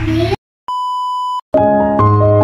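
A single steady electronic beep, a bit under a second long, set between two short gaps of dead silence as an edit effect; a child's voice ends just before it and piano-style keyboard music starts right after it.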